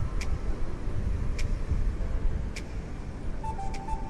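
Wind buffeting the microphone, a low, uneven rumble. A faint tick comes about every second and a quarter, and a few faint music notes come in near the end.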